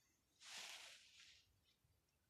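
Near silence, broken by one faint hiss lasting about a second, starting about half a second in.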